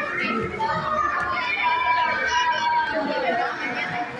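A group of children's voices singing together in long held notes, with chatter from others around them.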